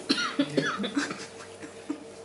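A person coughs once, sharply, about a tenth of a second in, followed by quieter vocal sounds.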